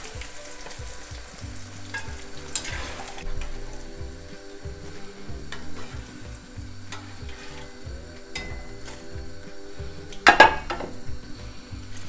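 Battered whitebait deep-frying in hot oil, a steady sizzle. A slotted metal spoon stirs the pieces and lifts them out, with a few clicks against the pan and a louder clatter near the end.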